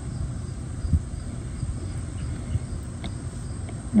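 Crickets chirping faintly in the background over a low, steady rumble, with a soft knock about a second in.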